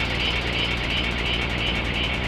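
Breakdown of an electronic dance track with no drums: a steady, rumbling, noisy synth texture with a quick pulsing hiss high up.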